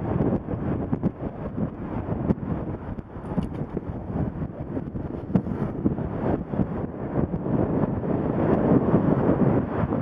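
Wind buffeting the microphone of a moving cyclist's camera, a rushing noise that swells and fades in gusts, with road traffic beneath it.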